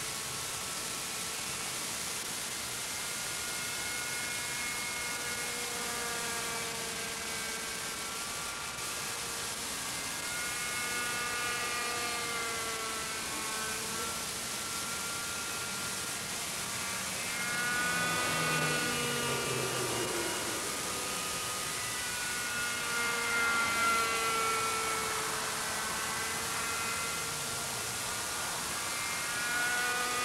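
GMP King Cobra radio-controlled helicopter in flight, its two-stroke glow engine and rotor running with a whine that rises and falls in pitch as it manoeuvres. It is loudest and sweeps most in pitch a little past halfway, with a steady hiss underneath.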